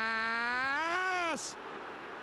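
A football commentator's long drawn-out shout, the player's name 'Díaz' stretched into one held note that rises slightly and cuts off about a second and a half in, leaving quieter background noise.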